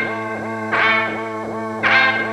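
Music: a distorted, effects-laden electric guitar holding a steady low drone, with notes struck twice that swell and sweep in tone.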